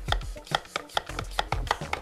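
Hand-pumped vacuum canister being pumped quickly to draw the air out of it: a rapid, even run of clicks, about five a second.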